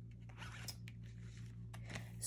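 Faint rustling and light scraping of a fabric-covered traveler's journal being handled and set down, over a steady low hum.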